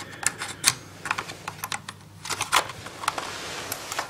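Irregular light plastic clicks and taps from fingers handling a laptop's card-reader slot and a small plastic slot blank, several in quick succession.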